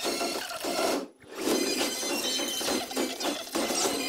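Film trailer soundtrack: music with mechanical and impact sound effects. It drops almost to silence for a moment about a second in, then comes back.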